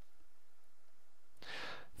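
Low steady recording hiss, then the narrator drawing a breath about one and a half seconds in, just before speaking.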